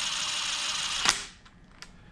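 Compact cordless impact driver running a timing chain tensioner bolt down into a Ford 4.6 V8 block with a steady rattling buzz. It stops with a sharp click about a second in, and a faint click follows near the end.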